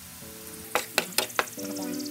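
Diced vegetables and a roux sizzling in a non-stick pan as a wooden spoon stirs them, with four sharp clacks of the spoon against the pan a little under a second in.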